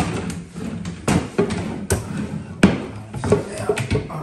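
Vanity cabinet drawers pulled open and pushed shut by hand, giving a series of sharp knocks and clacks, about half a dozen in four seconds, the loudest a little past the middle.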